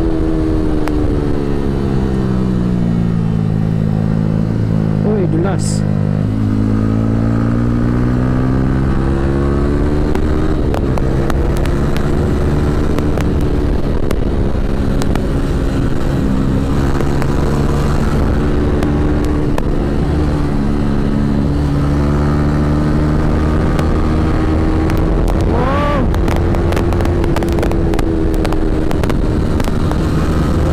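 Yamaha R15's 155 cc single-cylinder engine heard from on board while riding: the revs fall over the first few seconds, climb again, then hold steady at cruising speed for the rest.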